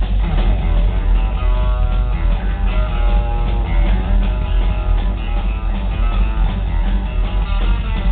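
Live rockabilly band playing loud, led by an orange Gretsch hollow-body electric guitar picking a run of single-note lead lines over a heavy bass-and-drums low end.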